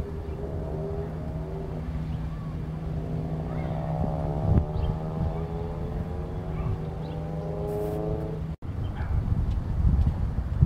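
An engine running with a steady low hum and a whine whose pitch rises slowly over several seconds, cut off suddenly about eight and a half seconds in.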